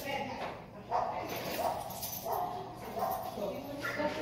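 Indistinct voices with a dog vocalising, a pattern of short pitched sounds coming and going.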